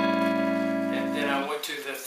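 Clean electric guitar playing an A7 chord, struck once and left to ring for about a second and a half before it is cut off short.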